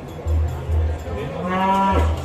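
A cow moos once near the end: one call that rises a little in pitch at the start and is held for under a second.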